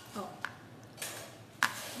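Fingers pressing and rubbing a thin sheet of flexible sugar paste against a tabletop: a soft brushing noise and two small sharp clicks, the louder one near the end.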